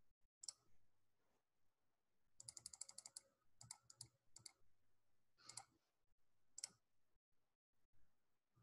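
Faint clicks of a computer mouse and keyboard. Single clicks come every second or so, with a quick run of about ten clicks about two and a half seconds in.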